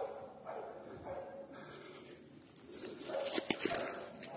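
A hunting dog barking repeatedly, about twice a second, baying at a wounded wild boar. About three seconds in, louder crackling and snapping of brush and twigs takes over as someone pushes through the undergrowth.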